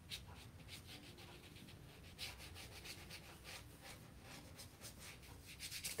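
Faint brush strokes on watercolour paper: a flat brush rubbing quickly back and forth as it lays a wet blue shadow wash, many short scratchy strokes in a row.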